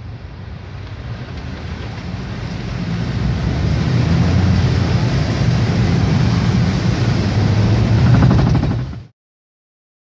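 Car driving through a flooded street in a heavy downpour, heard from inside the cabin: a low engine and road rumble with water noise that swells over the first few seconds, then cuts off abruptly about nine seconds in.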